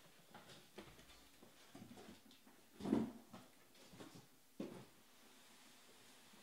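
Faint, scattered handling sounds of trading-card packs and cards on a table: a few soft knocks and rustles, the loudest about three seconds in.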